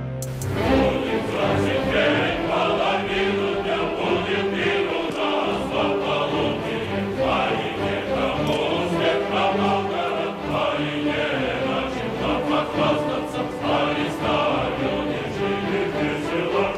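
Choral music: a choir singing with instrumental accompaniment, dense and continuous.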